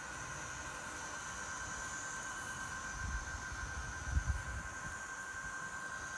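Mammotion Luba 2 robot lawn mower's electric motors giving a faint, steady high whine as the mower turns in place on the grass. A few low rumbles come in around the middle.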